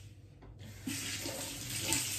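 Kitchen tap turned on about half a second in, running steadily into the sink as mint leaves are rinsed under it.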